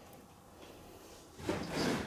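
Quiet room tone, then about a second and a half in, a short rustling swish as a hand reaches in and brushes the orchid's leaves.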